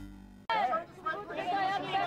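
An electronic music sting fading away, then, about half a second in, a sudden start of people talking.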